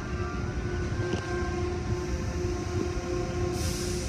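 Automatic tunnel car wash heard from inside the car: a steady low rumble of spinning cloth brushes and water beating on the car, over a constant machine hum. A burst of hiss starts near the end.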